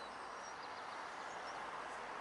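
Steady outdoor background noise, an even hiss, with a few faint, short high chirps.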